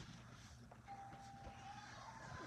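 Near silence: room tone with a faint low hum and a faint, thin, steady tone lasting about a second in the middle.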